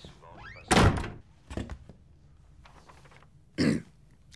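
A door slams shut about two-thirds of a second in, followed by a smaller knock about a second later. Another short, sharp sound comes near the end.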